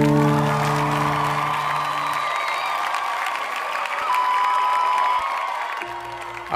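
The last strummed acoustic guitar chord rings on and fades away over the first two seconds, under a crowd applauding and cheering; the applause tapers off near the end.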